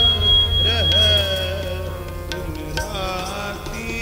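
Sikh kirtan: a male voice singing a shabad over steady harmonium chords, with a few scattered tabla strokes.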